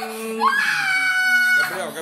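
A young boy crying in distress: one long, high wail starts about half a second in and breaks off near the end. He is crying from fear and pain as a butterfly needle goes into his arm for a blood draw.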